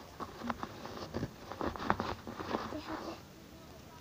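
Small plastic toy pieces and their packaging being handled: a quick run of light clicks and rustles that dies down near the end.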